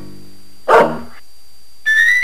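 Soft piano music with a single short dog bark about three-quarters of a second in, over a fading piano chord. Near the end a rising tone begins.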